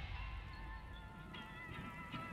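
Quiet break in a tribal trap track: the low bass left over from the cut-off drop dies away, then faint high melodic synth notes begin about a second and a half in.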